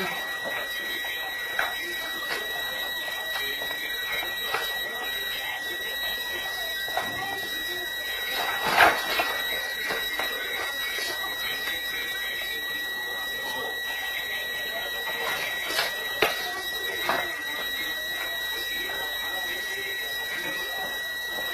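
A continuous high-pitched electronic alarm tone, holding one steady pitch without pulsing. A few scattered knocks sound over it, the loudest about nine seconds in and two more around sixteen seconds.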